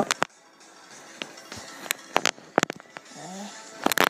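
Handling noise: scattered sharp clicks and knocks as plush toys and the hand-held recording device are moved about, about ten in all, with quieter stretches between them.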